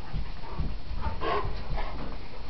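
Two dogs, a black Labrador retriever and a springer spaniel, wrestling in rough play, panting, with short vocal noises about half a second and about a second and a half in.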